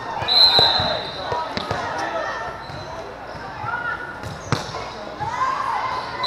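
A referee's whistle blowing once, briefly, about half a second in, then the sharp smacks of volleyballs being struck, among the chatter and calls of players and spectators, echoing in a large indoor sports hall.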